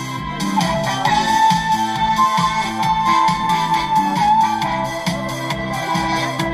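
Backing track of a Korean trot song playing an instrumental break: a steady beat under a held, wavering keyboard-like lead melody, with no voice singing.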